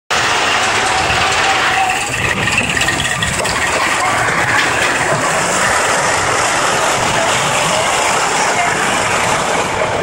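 Steady, loud rumble and rush of a roller coaster car rolling along its steel track, with faint voices underneath.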